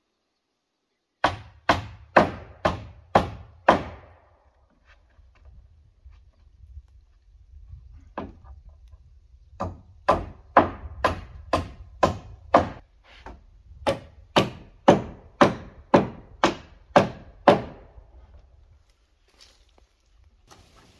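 Hammer driving nails into wooden roof decking boards: three runs of steady blows at about two a second, six, then seven, then eight strokes, with a single blow between the first two runs.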